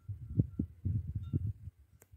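Wind buffeting the microphone outdoors: irregular low rumbling thumps that come and go in gusts, fading near the end.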